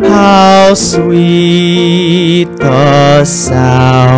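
A solo voice singing a slow hymn with vibrato, accompanied by sustained keyboard chords.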